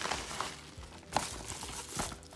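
A padded paper mailing envelope and small plastic zip bags crinkling and rustling as they are handled, with a sharp crackle about a second in.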